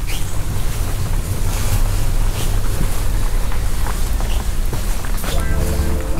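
Steady rushing air noise with a low rumble underneath, with music fading in near the end.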